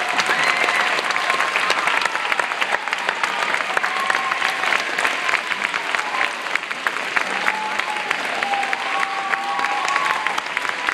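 Large audience of schoolchildren clapping steadily, with a few voices calling out over the applause.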